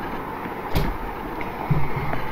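Steady background hiss and room noise of a voice recording, with a single sharp click about three-quarters of a second in and a brief low hum near the end.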